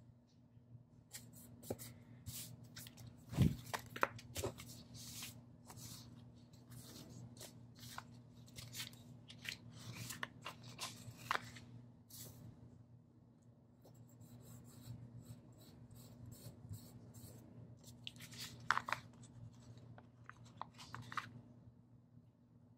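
Paper planner stickers being handled: sheets rustling, stickers peeled from their backing and pressed onto a paper planner page, in scattered soft crinkles and taps, with a thump about three and a half seconds in. A faint steady hum runs underneath.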